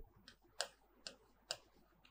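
Three faint clicks about half a second apart, a stylus tapping and writing on the glass of an interactive display screen.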